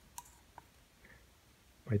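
Expo dry-erase marker tip clicking against a whiteboard while drawing: a sharp click early in the first second, a smaller one just after, then a faint touch, against a quiet room. A man starts speaking just before the end.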